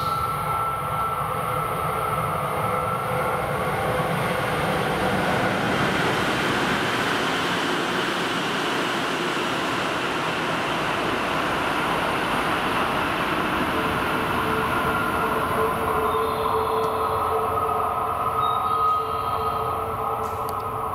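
Tsukuba Express train passing through a station at high speed without stopping: a loud, even rush of wheel and air noise. Steady whining tones come in over the last few seconds.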